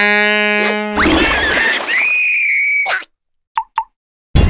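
A horn blown in a cartoon: one low, steady note for about a second, then a noisy blast with a whistle that rises and holds high for about a second. Two short high blips come near the end.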